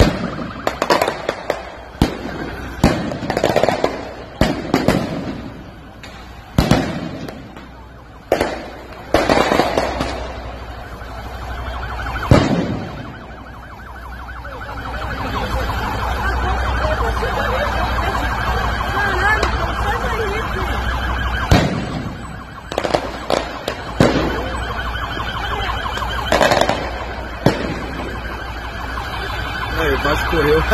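More than a dozen loud, sharp bangs of explosives going off in a street clash with police, each echoing off the buildings, coming thick in the first dozen seconds and again near the end. A wailing alarm-like tone runs underneath and stands out in the lull in the middle.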